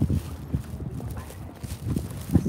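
Footsteps on a paved path: low thuds about twice a second from the person walking with the camera.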